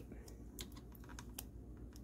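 Faint, irregular light clicks and taps of long fingernails against a plastic mannequin hand as a strip of tape is picked off its nail.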